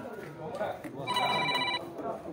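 A single steady pitched tone lasting under a second, starting about a second in, over faint voices.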